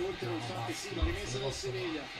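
Italian television football commentary: one man's voice talking continuously over the broadcast's background crowd noise, with a dull low thump about a second in.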